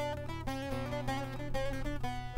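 Soundtrack music played on acoustic guitar, with a quick succession of plucked notes over a steady low bass.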